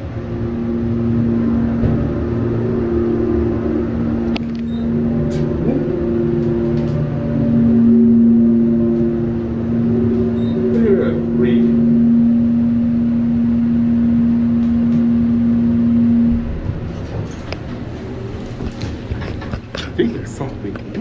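Delaware hydraulic elevator's pump motor running as the car rises, a loud steady hum that cuts off suddenly about three-quarters of the way through as the car arrives at the floor.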